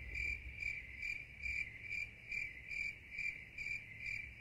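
Cricket chirping in a steady, even rhythm of about two chirps a second.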